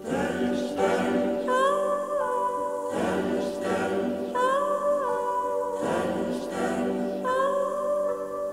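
Music: choir-like wordless voices with accompaniment, a short phrase repeated about every three seconds, each with a sliding high note in its second half.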